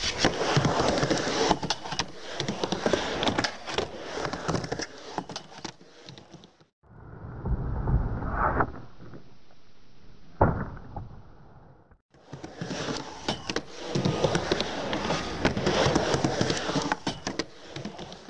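Skateboard wheels rolling on concrete, with sharp clacks of the tail popping and the board landing during ollies. The sound cuts twice between takes; the quieter middle stretch holds two single sharp clacks.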